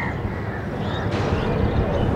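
Steady low outdoor rumble, with a short high bird call about a second in.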